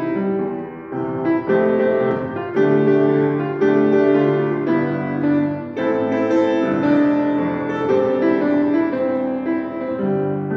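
A grand piano played solo: a tune of held chords and melody notes, changing about once a second.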